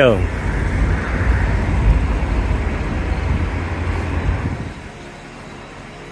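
Steady low rumble of road traffic outdoors, dropping to a quieter, even hum about four and a half seconds in.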